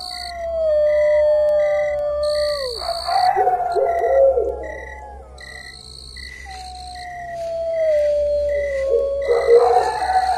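Eerie film-score sound design: slow falling tones over a short high beep pulsing about twice a second, with high sustained tones that cut in and out for about a second at a time.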